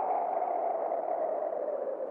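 A long, airy whoosh sound effect, like cartoon wind. Its pitch slides slowly downward and it fades a little toward the end.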